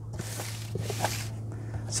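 Cardboard shipping box being handled and turned on carpet while it is opened with scissors: two soft scraping rustles with a few faint clicks, over a low steady hum.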